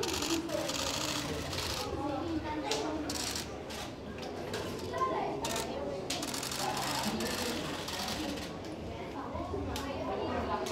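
An irregular run of quick hand slaps from children high-fiving people walking past, over the voices and chatter of children and adults.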